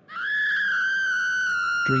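A single high-pitched held tone that sets in suddenly, sags a little in pitch and cuts off after about two seconds.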